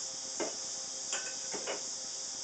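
Steady high chirring of crickets, with four or five light clicks and taps scattered through it.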